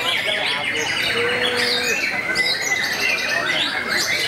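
Many caged songbirds at a singing contest singing at once: a dense, unbroken mass of overlapping quick chirps and whistles, with one short low steady whistle a little over a second in.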